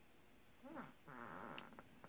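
Two short, faint, wavering vocal sounds, the second longer, about a second in, followed by a few soft clicks near the end.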